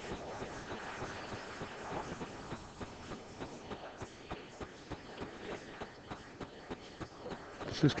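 Quiet pool-hall room sound: faint background voices with scattered light clicks.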